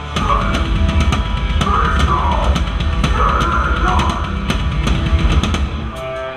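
Heavy rock band playing live, heard from right beside the drum kit, so the drums and cymbals sit loudest over a dense low-end wall of bass and guitars. The full band comes back in after a brief drop at the very start.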